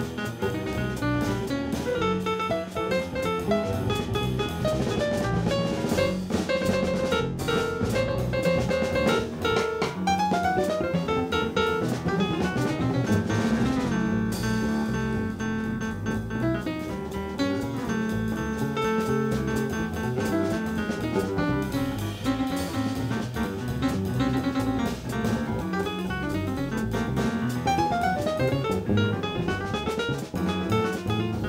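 Live jazz trio playing: plucked bass guitar, drum kit with cymbals, and grand piano.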